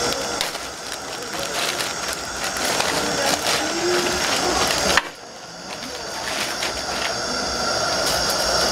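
Clear plastic packaging bag crinkling and rustling as ventilator tubing with its filter is pulled out of it. The rustling drops suddenly about five seconds in, then goes on more softly.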